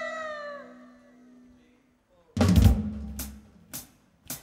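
A held musical note slides down in pitch and fades out over the first second; after a short silence an electronic drum kit comes in with one loud hit about halfway through, followed by two shorter single strokes.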